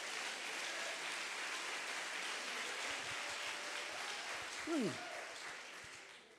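Audience applauding after a punchline, tapering off near the end, with a man's short "hmm" about five seconds in.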